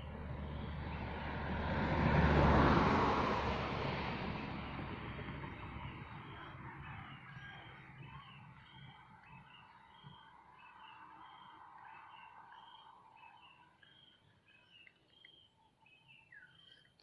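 A broad rushing noise swells and fades over the first few seconds. Then a bird calls in short, evenly repeated chirps, one or two a second, through the second half.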